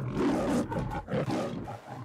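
Lion roar sound effect, loudest at the start and fading away, used as the closing audio logo of a BetMGM sportsbook radio ad.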